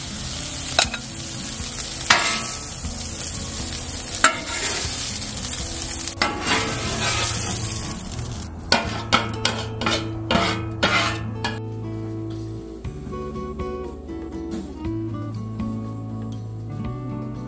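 Ground venison sizzling on a steel flat-top griddle, with a metal spatula and scraper scraping and knocking against the griddle surface a few times. About halfway through, the sizzle gives way to background music.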